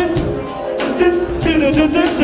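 Live funk band playing: electric bass, electric guitar and drums on a steady beat, with a voice singing over it.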